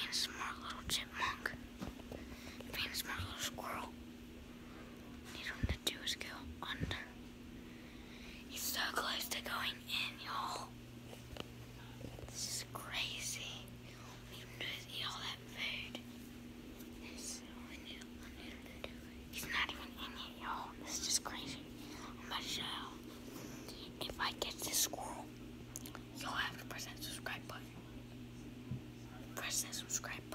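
A boy whispering in short bursts over a steady low hum.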